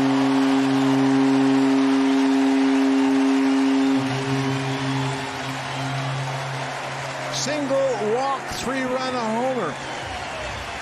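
Ballpark home-run horn sounding one long, steady low note, loudest for the first four seconds and then quieter, to mark a home run.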